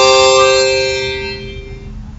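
Harmonica holding a chord of several notes that fades away over about a second and a half until the playing stops.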